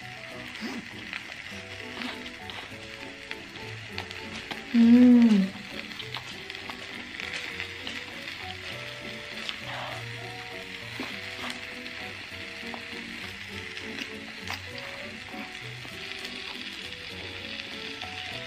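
Food sizzling steadily in a dish kept hot on a tabletop warmer, with light crackles, over soft background music. About five seconds in, a short hummed "mm" rises and falls.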